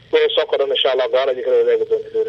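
Speech only: a man talking in Somali, with the narrow, thin sound of a phone or radio line.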